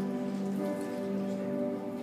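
Church worship band playing a soft passage of long held chords.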